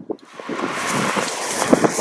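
Wind on the microphone: a steady rushing noise that starts a moment in and holds.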